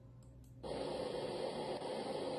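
A low hum with two faint clicks, then a steady, even hiss that switches on abruptly about half a second in and holds level.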